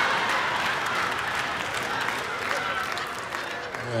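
Live audience applauding after a punchline, easing off slightly near the end.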